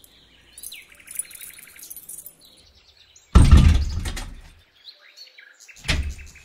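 Birds chirping, with a fast, even trill about a second in. A little past halfway a loud, sudden noise with a deep rumble starts and fades out over about a second.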